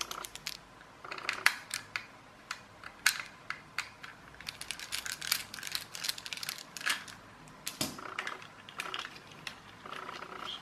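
Small screwdriver turning out screws from a toy car's circuit board and plastic chassis: a string of sharp, irregular clicks and ticks of metal on screw heads and plastic.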